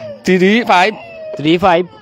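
A man speaking in two short stretches, with drawn-out, wavering syllables and a thin held tone between them.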